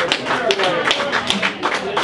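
Live one-man-band blues: electric guitar with irregular sharp taps and knocks from the player's percussion, and voices mixed in.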